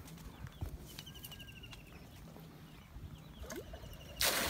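Faint outdoor ambience with distant bird calls: a short rapid trill heard twice and a brief thin whistle, over a low rumble and a few light ticks.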